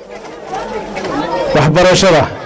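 A man speaking into a handheld microphone. His talk is quieter at first and louder near the end.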